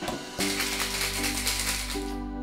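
Background music with a steady tune. About half a second in, a dense, hissing rattle of ice shaken in a metal cocktail shaker sets in and runs until it cuts off abruptly.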